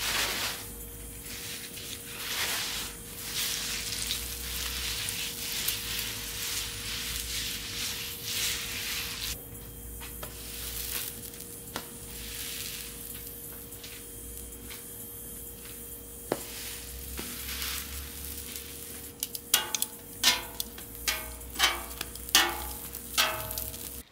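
Bacon grease sizzling on a hot Blackstone flat-top griddle while it is wiped with a paper towel and burger buns are pressed down to toast, with a faint steady hum underneath. Near the end comes a quick run of sharp taps and clicks.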